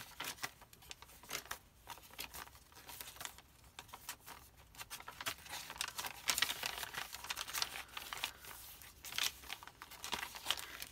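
Paper and card pages of a handmade journal being turned and handled by hand: dry rustling and crinkling in irregular bursts, busiest about six to seven seconds in.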